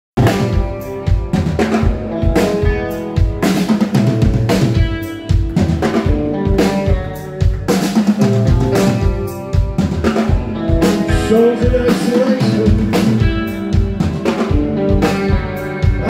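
A live post-punk band plays the instrumental opening of a song. A drum kit beats steadily with bass drum and snare, under bass guitar, electric guitars and sustained keyboard notes.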